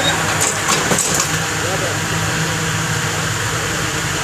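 Steady drone of running machinery with a low, even hum, and voices talking in the background.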